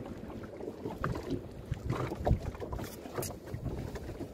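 Wind on the microphone as an irregular low rumble, with scattered short knocks and crackles. The loudest knock comes about two and a half seconds in.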